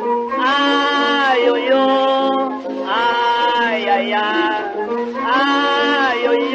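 Instrumental break on a 1924 acoustic-era 78 rpm samba record: a lead instrument plays three long held phrases over a steady lower accompaniment.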